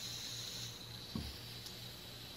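Faint steady hiss and low hum of room tone, with one soft knock just over a second in.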